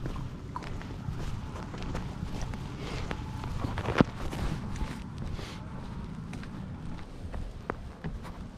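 Footsteps of a person walking on a concrete sidewalk, heard through a GoPro mounted at the walker's hip, over a steady low rumble of mount and clothing noise. A sharp click about four seconds in is the loudest sound.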